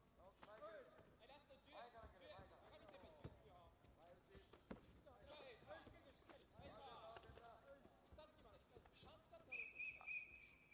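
Faint voices calling out and dull thuds of full-contact karate strikes and footwork on the mat. Near the end a steady high tone sounds.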